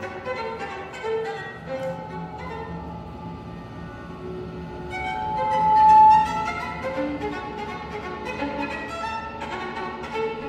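Solo violin over an electronic part in a contemporary piece, playing short, broken notes. About five seconds in, one long held note swells to the loudest point and then breaks off.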